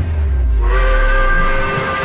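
Steam train whistle blowing a steady chord of several pitches, starting about half a second in, over a deep rumble that sinks in pitch and fades.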